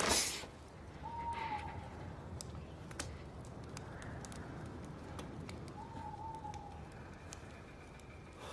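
A bird calling twice, about five seconds apart: each call a short whistled note that slides slightly downward. Faint scattered clicks sound over a low steady background.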